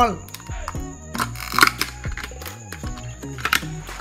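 Clear plastic clamshell case crackling and clicking as it is opened and a phone mainboard is taken out: a run of sharp plastic clicks, loudest about a second and a half in. Background music runs underneath.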